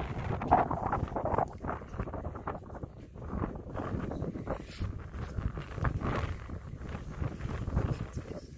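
Wind buffeting a phone's microphone, an uneven low rumble that rises and falls.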